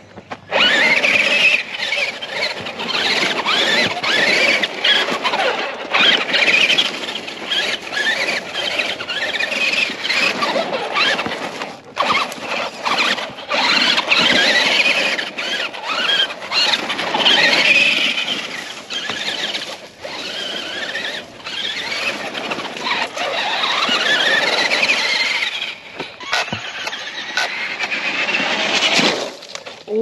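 Brushed electric motor and geared drivetrain of a Traxxas Rustler 4x4 RC truck whining, rising and falling in pitch as the throttle is opened and closed while it drives over dirt and grass.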